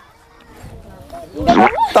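A quiet stretch of low background, then about a second and a half in, a brief vocal sound from a person that rises in pitch.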